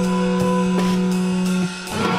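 Instrumental passage of a rock song played on guitars and drums: a held guitar chord rings over drum and cymbal hits about two and a half times a second. Near the end the chord breaks off briefly and a new one comes in.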